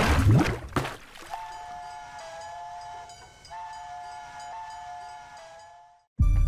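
A loud whoosh dies away in the first second, then a steady two-note whistle-like tone holds with brief breaks and fades out near the end.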